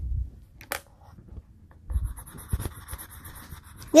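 Yellow coloured pencil scribbling on paper on a clipboard: a scratchy rubbing in quick back-and-forth strokes, clearest in the second half, with a few soft bumps and a click from handling.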